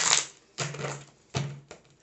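Tarot cards being shuffled and handled: a couple of brief rustling bursts of card noise, then two sharp snaps of cards about a second and a half in.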